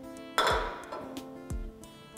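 A glass beer bottle set down on a stainless steel vessel top, giving one sharp clink about half a second in. Background guitar music with a steady beat plays throughout.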